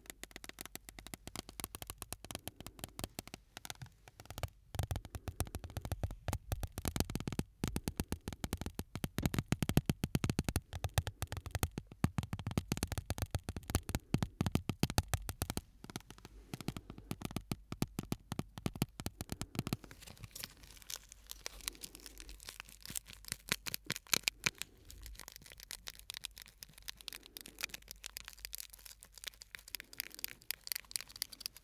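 Shards of broken glass handled and rubbed together close to the microphones: a dense run of small clicks, ticks and crackles of glass on glass. The clicking is busiest and loudest in the first half and thins out later.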